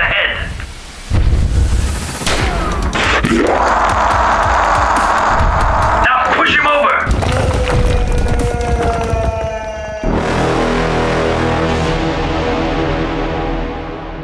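Fight sound effects: heavy booms and impacts with cries and growls. About ten seconds in, a sustained dark music chord comes in and begins to fade near the end.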